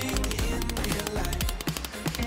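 A rapid series of hammer strikes on a silver band held around a steel mandrel, shaping it into a round collar, heard over background music.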